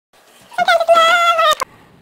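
A child's long, high-pitched yell, held for about a second on one pitch and then dipping slightly, cut off by two sharp knocks.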